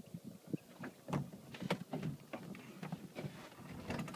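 Irregular light knocks and taps aboard a drifting speedboat whose engine is off because it has run out of fuel.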